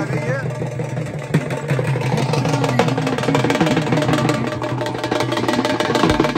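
Dhol drums beaten in a fast, dense rhythm, with voices over the top and a steady low hum underneath.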